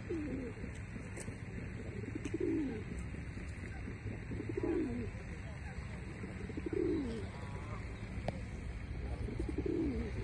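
Feral pigeons cooing: five low calls about two seconds apart, each falling in pitch, over a steady low outdoor rumble.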